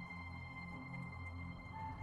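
Soft ambient background music: long held high notes over a low, gently pulsing drone, with a new note coming in near the end.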